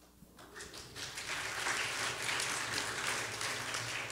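Audience applauding: a dense patter of clapping that builds up about half a second in, holds steady, and begins to die away near the end.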